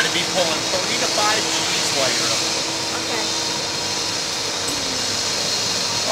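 Steady mechanical hum of the slingshot ride's machinery, with a low steady tone and a high whine, while the capsule is held before launch. Faint voices come through in the first two seconds.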